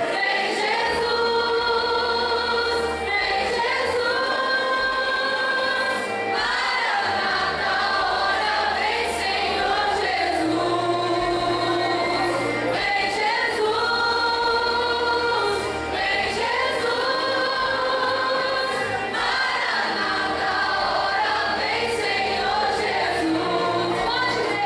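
A church choir led by women's voices sings a hymn into microphones, in long held notes that change every couple of seconds, over low held bass notes.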